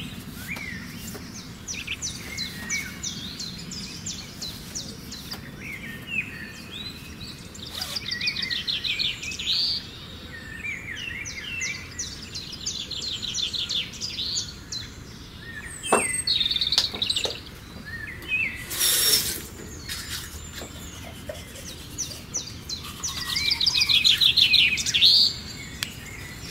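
Songbirds chirping and singing, with several fast trills, over a soft background hiss. A single knock comes about two-thirds of the way through, followed a few seconds later by a brief rustle.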